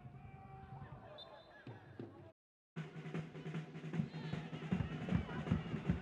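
Football stadium sound with drums beating in the stands, a run of repeated thumps over the crowd's noise. The sound cuts out to silence for about half a second just after two seconds in.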